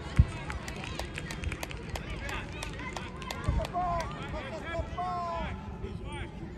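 Distant voices of children shouting and calling across an open field, clearest in the second half, over a steady low rumble. A sharp thump sounds just after the start, and scattered clicks follow about a second or two in.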